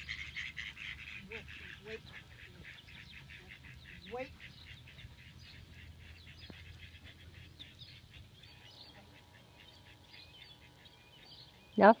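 A few ducks quacking faintly in quick, repeated calls.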